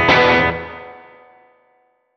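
Final chord struck together on an electric guitar and an acoustic twelve-string guitar just after the start, ringing out and fading to silence over about a second and a half.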